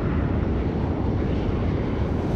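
Steady, deep engine noise of an F-16 fighter jet in flight.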